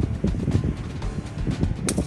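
Wind buffeting the microphone, with one short sharp smack just before the end: a snowball hitting the asphalt road.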